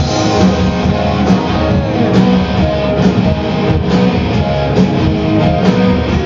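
Live punk rock band playing loud, with strummed electric guitars over a steady beat.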